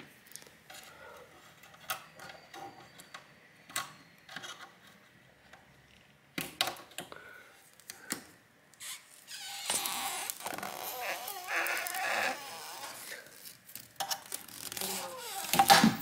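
Scattered small clicks and taps of a thin tool against a laptop's display panel and lid frame, with a stretch of crackling, scraping noise near the middle as the glued screen panel is worked loose.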